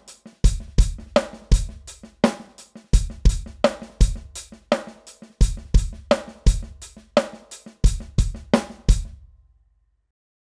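Electronic drum kit playing a 7/8 groove counted as four plus three: steady hi-hat eighth notes, bass drum and accented snare backbeats, with quiet snare ghost notes filled in between. The playing stops shortly before the end.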